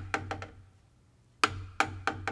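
A wooden drumstick strikes a practice surface and is allowed to rebound freely, giving a quick string of dry taps that die away. A second stroke with its own rebound taps comes about a second and a half in.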